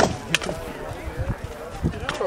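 Two sharp wooden knocks, the first at the very start and the second about a third of a second later, then a lighter knock near the end, with faint voices in between.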